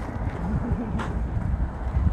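Low, steady outdoor rumble, of the kind wind on the microphone makes, with a single sharp click about halfway through.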